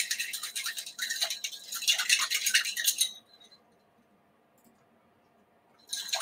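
Ice clinking in a drink being stirred with a spoon: rapid rattling clinks that stop about three seconds in.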